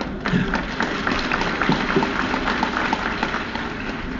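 Large audience laughing and clapping at a joke: a burst of scattered applause and laughter that breaks out at once and tails off near the end.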